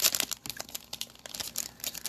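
Foil wrapper of a Panini Mosaic basketball card pack crinkling in gloved hands, a run of short irregular crackles.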